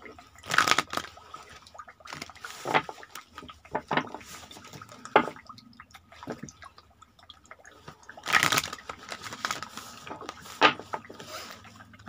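A deck of oracle cards being shuffled by hand: a series of short papery swishes, the longest about a second in and again around eight seconds in, with small clicks of cards near the end.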